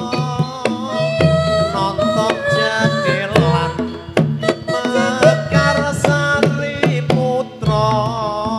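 Live Javanese jaranan ensemble music: quick kendang hand-drum strokes over deep, regularly repeating low tones, with a wavering high melody line on top.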